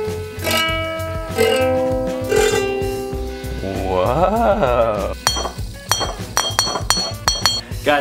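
Ukulele strings struck with the arm of a fidget spinner: three notes ring out one after another in the first few seconds. A person's voice follows, one call rising and falling in pitch, then a quick run of sharp clicks near the end.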